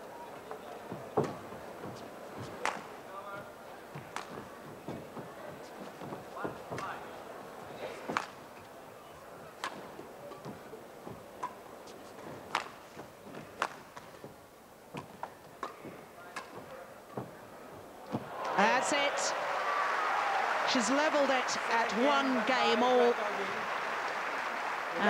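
Badminton rally at game point: sharp racket strikes on the shuttlecock about once a second in a large indoor hall. About eighteen seconds in the rally ends and a crowd breaks into loud cheering and shouting as the game is won.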